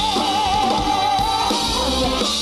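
Live band of keyboards, electric guitar, bass and drums playing, with one long held note wavering in pitch that fades out about a second and a half in.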